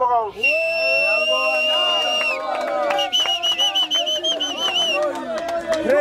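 A whistle blown over a shouting crowd. First comes one steady blast of about two seconds, then, a second later, a warbling trilled blast of about two seconds.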